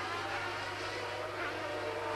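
Formula One race car engine running at a steady, held pitch, fairly quiet, with only a slight drift in tone.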